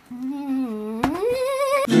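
A man's voice drawing out a long hummed 'Vvvv', the first sound of the show's name 'VLearning'. It holds low, slides up in pitch about halfway through and cuts off just before the end.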